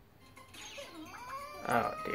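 Anime episode soundtrack played through a computer monitor's speakers: high, squeaky voice-like calls that slide up and down in pitch, starting after a near-quiet moment, with a louder burst near the end and a slowly rising tone.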